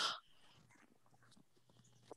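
A breathy voice sound trails off just after the start, then near silence.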